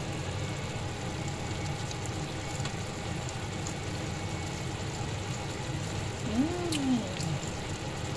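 Chicken liver adobo simmering in a frying pan on a gas stove: a steady bubbling hiss over a low hum. About six seconds in comes a short voiced sound that rises and falls in pitch.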